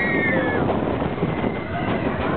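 Big Thunder Mountain Railroad mine-train coaster running along its track with a steady rumble and rattle. A high squeal bends down and stops about half a second in.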